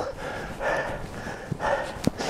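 A cyclist breathing hard and laboured while climbing a steep hill: heavy breaths about once a second, with a brief click about one and a half seconds in.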